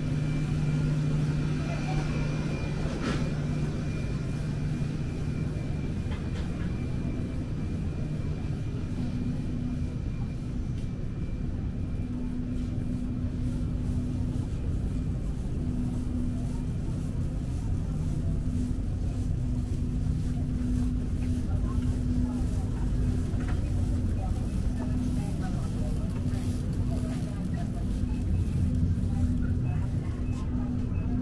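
Supermarket ambience: a steady low hum from refrigerated display cases and store ventilation. One steady tone in it stops a few seconds in, and another comes and goes later on. Faint voices can be heard in the background.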